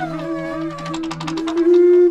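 Ensemble of lip-reed instruments, animal horns and conch shells among them, sounding overlapping held low tones that slide in pitch, over quick percussive clicks. A loud held note comes in near the end.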